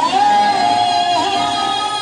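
Song with a sung vocal line over backing music. The voice slides up into one long held note.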